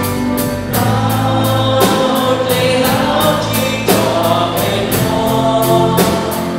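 Live worship band playing a praise song: singing over electric guitar and bass, with drums and cymbals keeping a steady beat of about three strokes a second.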